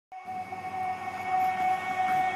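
Background music opening on a held chord of sustained tones that swells louder over the two seconds.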